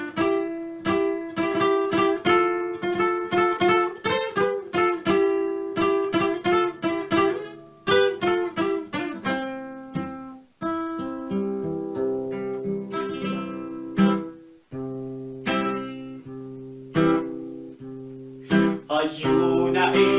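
Acoustic guitar played solo: a quick, even strummed rhythm for the first half, then slower chords struck and left to ring. A singing voice comes in right at the end.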